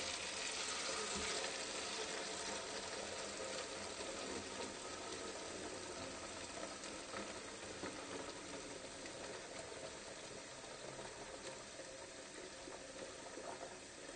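Water pouring from a jug in a steady, splashing stream, slowly getting quieter as it goes.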